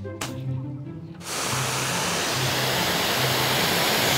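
High-pressure water jet from an ANOVI 30S pressure washer's lance with a 15-degree nozzle, starting suddenly about a second in and then spraying as a steady, loud hiss.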